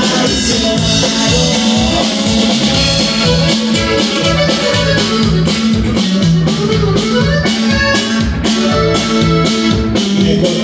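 Norteño band playing an instrumental passage without vocals: a drum kit keeps a steady, even beat under a sustained keyboard-like melody line.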